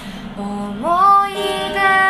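A woman singing a slow song in Japanese, accompanying herself on acoustic guitar; her voice glides up to a higher held note about a second in.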